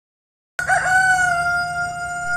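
A rooster crowing: one long call held at a steady pitch, starting abruptly out of silence about half a second in.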